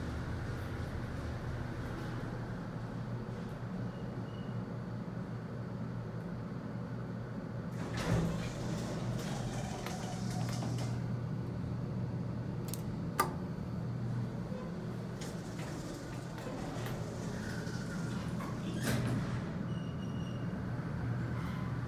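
Sliding doors of a 1968 Westinghouse traction elevator opening with a thud and rumble about eight seconds in, over a steady low hum in the car. A sharp click follows about five seconds later, and another short knock comes near the end.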